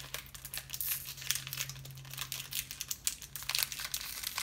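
Plastic candy wrapper crinkling as it is handled and worked open, in a dense run of irregular crackles.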